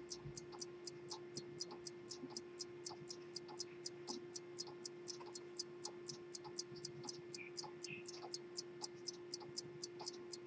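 Lever escapement of a circa-1850 D. Delachaux Locle pocket watch ticking steadily, about five ticks a second, over a steady low hum.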